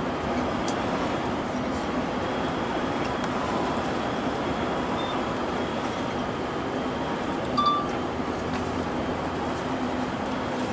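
Steady engine and tyre noise heard inside a moving vehicle's cabin, with a few light clinks from something rattling, the clearest about three-quarters of the way through.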